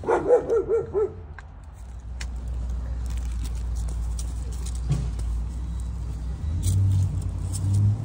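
A dog gives a quick run of four or five short, pitched yelps in the first second. After that a low, steady rumble carries on, growing stronger for a moment near the end.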